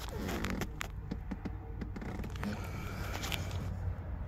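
Scraping, rubbing and clicking from a phone being handled and moved around inside a car, over a steady low hum.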